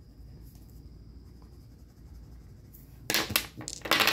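A pair of dice rolled onto a hard tabletop, clattering in a quick run of clicks for about a second near the end. Before that, only quiet room tone with a faint steady high whine.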